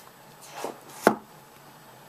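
iPhone 5 cardboard box handled on a wooden desk: a soft short knock, then one sharp knock about a second in.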